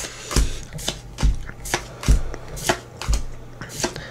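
Pokémon trading cards being flipped through one at a time in the hand, each card making a short sharp snap, about two or three a second.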